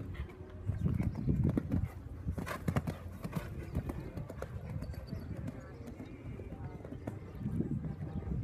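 Hoofbeats of a show-jumping horse cantering on a sand arena. They are loudest about two and a half to three and a half seconds in, as the horse passes close by.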